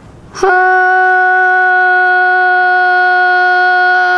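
A woman's voice starts about half a second in and holds one long, steady sung note, opening a sung buraanbur demonstration.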